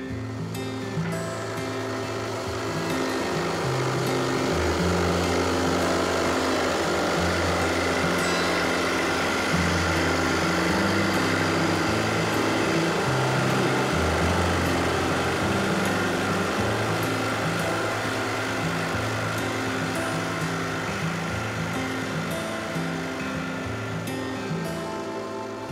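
Drill press boring a hole into a bent wooden chair backrest. Its steady cutting noise builds a few seconds in and eases off near the end, under background acoustic guitar music.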